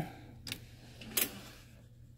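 Two short, sharp clicks about three-quarters of a second apart, from a pen being picked up and handled, over a low steady hum.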